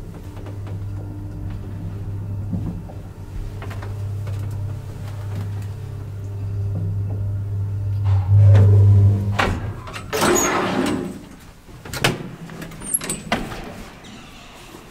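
Graham Brothers traction elevator car travelling with a steady low machine hum, which swells and then stops about nine seconds in as the car arrives. The car's folding metal gate is then slid open with a rattle, followed by a few sharp clicks and knocks.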